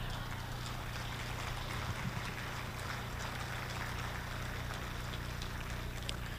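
Audience applause, fairly faint and steady, over a low steady hum.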